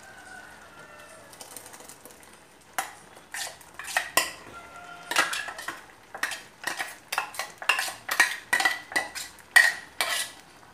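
Stainless-steel kitchen vessels clinking and scraping as thick ground masala paste is scraped out of one steel vessel into a steel pot of cooked kidney beans. The run of sharp metallic clinks starts about three seconds in and comes two or three times a second.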